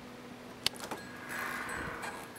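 Quiet studio room tone with a faint steady hum. There is a single sharp click a little over half a second in, and a soft rustle of movement in the second half.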